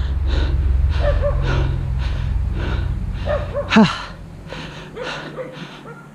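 A mountain biker panting hard, quick rhythmic breaths over a low wind and tyre rumble that dies away about four seconds in as the bike comes to a stop, with a short voiced sigh at that point.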